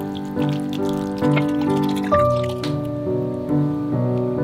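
Soft piano music, with wet squelching and clicking from a hand kneading sliced raw beef in its marinade and starch slurry in a steel bowl, dying away about three seconds in.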